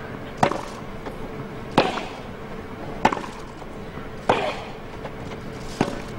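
Tennis ball struck back and forth with rackets in a baseline rally: five crisp hits, each about one and a quarter to one and a half seconds apart.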